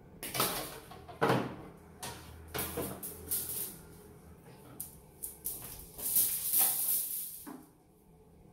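Thick bonsai wire being handled and pulled. It gives a run of uneven scraping and rustling noises, loudest about a second in and again in a longer stretch near the end.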